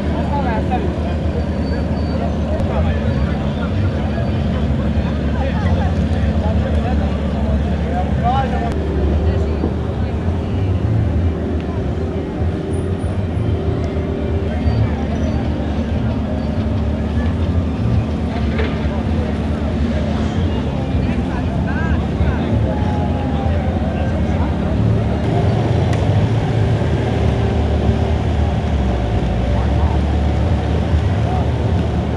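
Small boat outboard motors running steadily on the water, with people's voices in the background.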